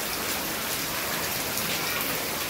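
Heavy rain pouring onto standing water on a flooded concrete courtyard and onto tree leaves: a steady, dense hiss of countless drops splashing.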